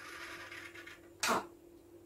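Felt-tip marker drawing a stroke on a hand-held sheet of paper, a faint scratchy sound lasting about a second, followed by one short spoken word.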